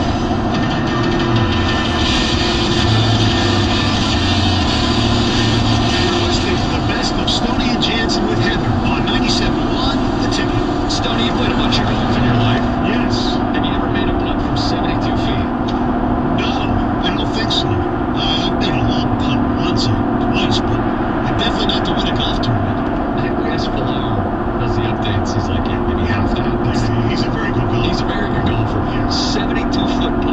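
Steady road and wind noise inside a car cruising at about 75 mph on a freeway, with a constant low drone under it.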